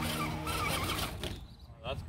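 Electric motor and gearing of a scale RC rock crawler whining as it climbs boulders, with a short rising whine near the end as the throttle comes up.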